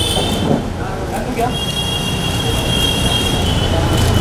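A steady high-pitched whine of a few close tones together comes in about one and a half seconds in, over a low background hum.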